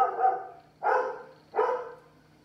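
Dog barking: the end of one longer bark, then two short barks about a second and a second and a half in.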